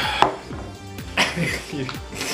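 A metal spoon and a glass hot sauce bottle being handled over a tub of ice cream: short clicks and scrapes, the sharpest about a quarter second in.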